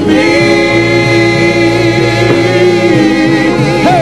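Gospel worship singing by a small group of voices holding one long note for most of the stretch, wavering near the end, over steady sustained backing chords.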